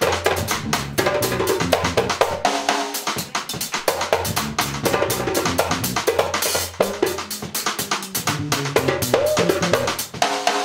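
Live jazz band playing: a drum kit with cymbals and a hand drum keep up a busy rhythm of fast strikes over a low, moving bass line.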